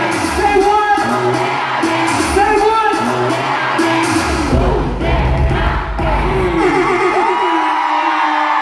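Live hip-hop music played loud through a concert PA in a large hall, with vocals over the backing track and whoops from the audience.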